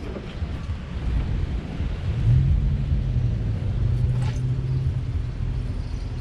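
Uneven low rumble of wind buffeting the microphone, with a steady low hum setting in about two seconds in.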